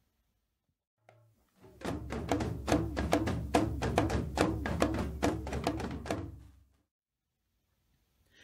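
Dagbamba drum ensemble of gung-gong drums and a lunga hourglass talking drum playing the polymetric answer, a 3-against-2 pattern: a quick run of strokes whose pitch keeps gliding down and up. The drumming starts about two seconds in and cuts off abruptly near seven seconds.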